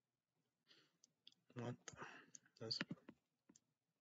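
Quiet mouth clicks and lip smacks from a man close to the microphone, with a breath and a couple of short mumbled syllables.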